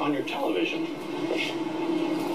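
Television audio picked up through the set's speaker: a voice over a steady low drone.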